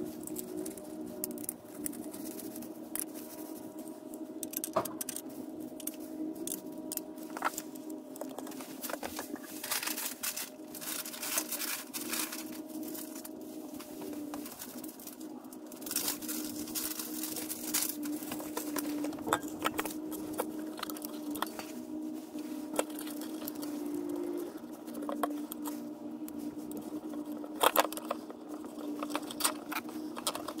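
Clicks, taps and rattles of hands working a small plastic-and-metal cabinet exhaust fan, its screws, cable and zip tie, as the fan is taken apart and flipped over to reverse its airflow. A steady low hum runs underneath.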